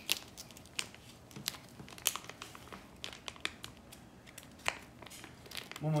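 Plastic snack packet crinkling as it is handled and pulled open by hand, in irregular sharp crackles.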